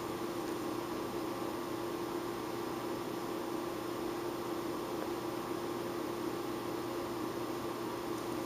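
Steady background hiss with a constant low hum, like a running fan or electrical room noise; no sound from the brushwork stands out.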